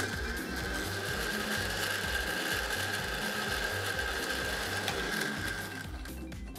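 Countertop electric blender running with a steady high whine as it grinds walnuts and purple basil. It switches on suddenly and stops after about six seconds.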